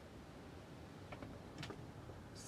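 Faint small clicks as makeup items are handled, a few of them about a second in and again near the end, over a low steady background rumble from strong wind outside.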